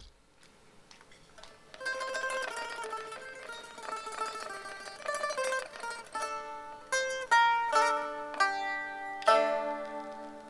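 Solo saz, the Turkish long-necked lute, played live. After a near-silent pause of about two seconds come quick runs of plucked notes, then louder, separate struck notes, and a final chord that rings out: the closing phrase of the piece.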